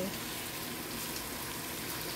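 Chicken and potato wedges sizzling steadily in a copper-coloured pan on the stove.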